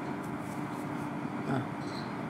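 Steady room hum with a faint low droning tone, and a brief hesitant "uh" about one and a half seconds in.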